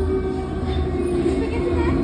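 Steady low rumbling of a ghost-house dark-ride car running along its track, with a faint steady hum over it.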